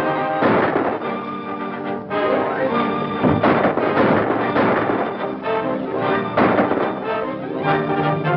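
Orchestral film score with prominent brass, playing dramatic action music with several loud, sudden accents a few seconds apart.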